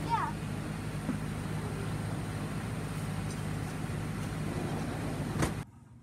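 Steady outdoor background noise with a low, constant hum, of the kind a road or a running machine gives. About five and a half seconds in there is a single sharp click, and the noise then cuts off suddenly to a much quieter room.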